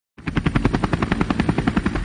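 Helicopter rotor beating in a rapid, even chop of about a dozen beats a second, starting just after the opening.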